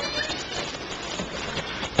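Meeting-room background noise with faint murmuring voices, and a brief high-pitched sound at the start.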